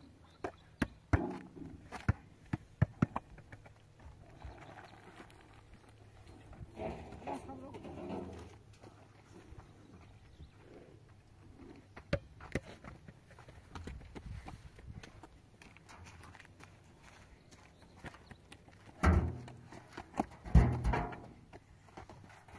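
A few sharp knocks and clatters, then people's voices in short bursts, loudest near the end.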